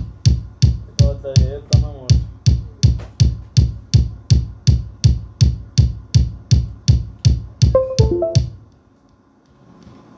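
Drum-machine beat playing back through studio monitor speakers: a steady pattern of deep kicks, each with a crisp hi-hat-like tick, about three to four hits a second, with brief synth notes over it. The loop stops suddenly near the end.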